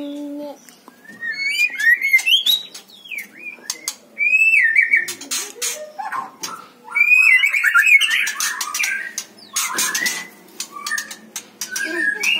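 White-rumped shama (murai batu, 'stone magpie') singing: bursts of varied, rising and falling whistled phrases mixed with sharp clicks, separated by short pauses.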